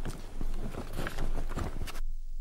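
Stadium crowd noise with a run of irregular sharp taps.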